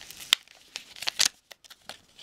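Paper rustling and crinkling in short, sharp crackles as an envelope is opened and the folded letter inside is handled.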